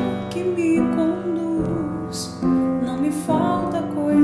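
A woman singing a liturgical psalm melody, a sustained, gently moving vocal line, accompanied by held chords on an electronic keyboard.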